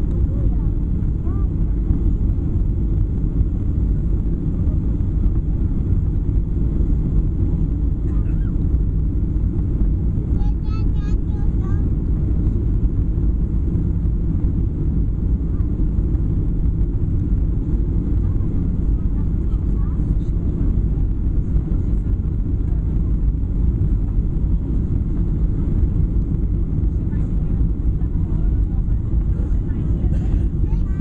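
Steady cabin noise inside a Boeing 737 airliner on final approach with flaps extended: a loud, even rumble of engines and airflow, heavy in the low end, that holds without change.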